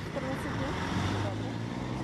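Motor vehicle engine running steadily with road traffic noise; a low engine hum and a wash of traffic noise fill the second half, with faint voices near the start.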